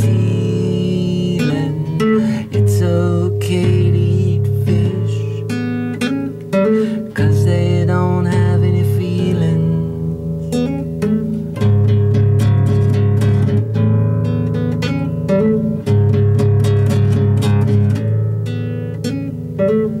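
Acoustic guitar strummed in a steady chord progression, the chord changing about every two seconds.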